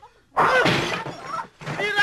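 A baseball bat smashing office objects: a sudden loud crash of breaking things about a third of a second in, with a man's yells over it and after it.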